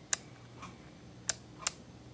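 Three sharp clicks of a superzoom digital camera's control buttons being pressed to step through a setting, one about a moment in and two close together near the end.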